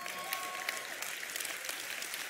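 Congregation applauding, a steady patter of many hands clapping.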